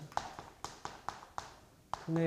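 Chalk striking and scraping on a chalkboard while writing, a quick series of sharp taps.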